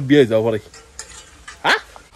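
A man speaking briefly, then a lull and a short, sharply rising swoosh near the end.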